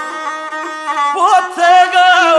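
Gusle, the single-string bowed folk fiddle of South Slavic epic song, playing a melody line that holds level notes and then breaks into quick pitch turns about a second in.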